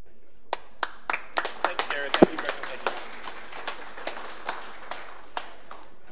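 Applause from a small audience: scattered claps begin about half a second in, thicken for a couple of seconds, then thin out to a few last single claps.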